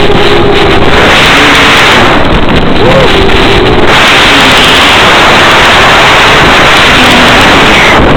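Electric motor and propeller of a low-flying FPV model plane, heard through the onboard microphone under a loud, steady rush of wind and hiss. The motor's hum wavers around three seconds in and is mostly buried by the rush from about four seconds in, as the throttle eases.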